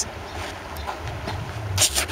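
Wind buffeting the microphone, a steady low rumble, with a short hiss near the end.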